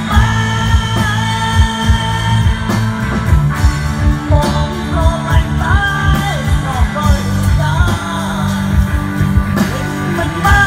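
Live band playing a Khmer song: electric guitar, keyboards and bass over a steady drum beat, with a man singing into a microphone.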